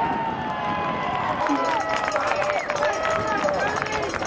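Several voices shouting and calling at once on a lacrosse field, some calls held long and sliding in pitch, with scattered sharp knocks in between.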